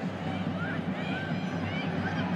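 Stadium crowd noise, a steady hum of many people, with a few faint distant shouts.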